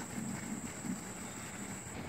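Steady high-pitched insect drone in summer trees, with a faint low hum beneath it.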